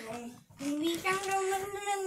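A child's voice singing a short tune that steps upward in pitch, holding the last note for about a second.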